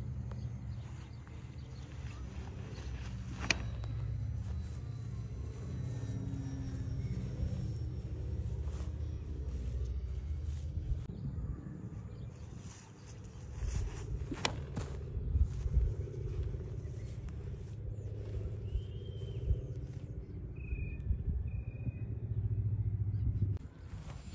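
Low, uneven outdoor rumble, like wind on the microphone or distant road traffic, broken by two sharp clicks, one a few seconds in and one about midway.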